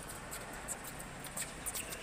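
Tennis shoes squeaking and scuffing on an indoor hard court as players shuffle side to side, several short sharp squeaks over a steady hall hum.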